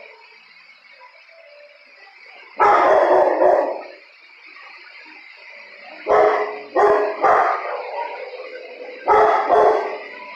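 A dog barking in loud bursts: a cluster about two and a half seconds in, three more between six and seven and a half seconds, and two near the end.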